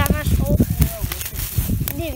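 Brief bits of speech over the rustle of dry pine needles and forest litter being handled close to the microphone, with a sharp click near the end.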